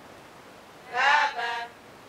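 Group of nuns singing a vow prayer in unison. A short pause, then one short sung phrase about halfway through.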